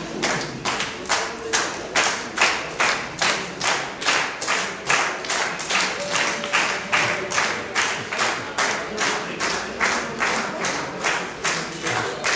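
Many people clapping together in time, a steady beat of about three claps a second.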